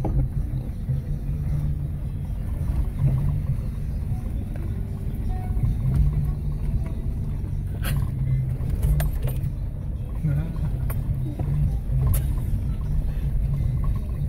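Low, steady engine and drivetrain rumble heard inside the cabin of a four-wheel-drive vehicle crawling up a rough dirt track. Sharp knocks and rattles from the jolting come in a cluster about eight to nine seconds in and again near twelve seconds.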